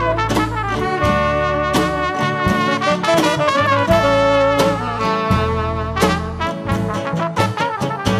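Band music: a horn melody on saxophone and brass over a steady bass line, with regular percussive strokes.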